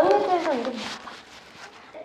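A short drawn-out vocal exclamation, its pitch arching up and then falling, in the first half second or so; after that the room is quiet.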